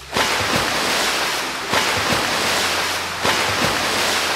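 Museum flash-flood exhibit sending a loud rush of water down a rock canyon. It starts suddenly and surges again twice.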